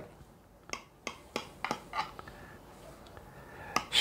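Kitchen knife cutting through a soft cake in a baking dish: several faint, light clicks and taps of the blade against the dish, spread over the first two seconds, with one more near the end.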